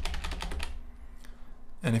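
Computer keyboard typing: a rapid run of keystrokes that stops a little before halfway through.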